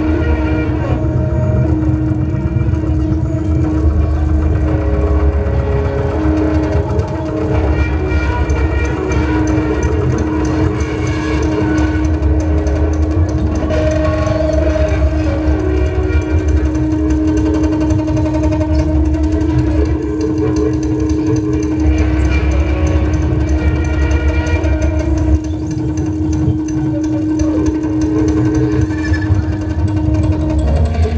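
Live electronic noise music from electronic instruments played through an amplifier: a steady held drone over a dense low rumble, with shorter higher tones coming and going.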